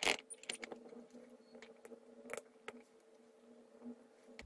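Handling of a digital multimeter: a sharp click as its rotary dial is turned, then scattered light clicks and clatters as the test leads and crocodile clips are handled, over a faint steady hum.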